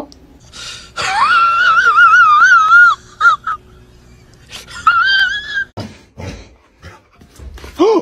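A dog whining in a high, wobbling pitch for about two seconds, then a brief whine and, about five seconds in, another shorter one.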